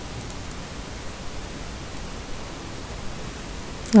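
Steady hiss of a recording's background noise, with no other sound until a woman's voice begins right at the end.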